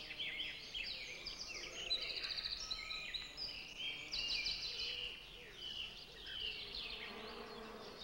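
Outdoor summer ambience: many high chirps and fast trills keep coming throughout, over a faint low insect buzz.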